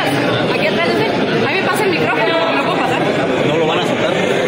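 A crowd of many people talking at once in a large hall, making a steady din of overlapping voices.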